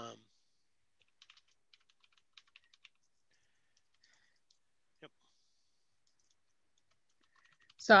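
Faint computer keyboard typing: a scatter of light key clicks for about two seconds, then one sharper click a few seconds later.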